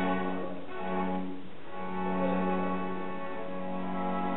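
Two violins, a viola and a cello bowing long held notes together in a live chamber performance. A low sustained note drops out briefly twice and comes back.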